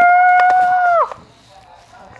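A child's high-pitched voice holding one long squeaky note in imitation of Pikachu's cry, breaking off about a second in, followed by faint handling clicks.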